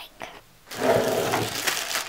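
Crinkling and rustling of the clear plastic bag around a coiled power cord as it is handled, starting about two-thirds of a second in after a brief hush and continuing as an uneven crackle.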